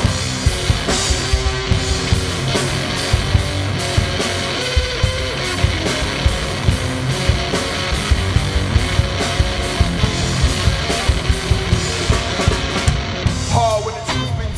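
Live rock band playing an instrumental passage: distorted electric guitar over a drum kit keeping a steady, driving beat. A voice comes back in right at the end.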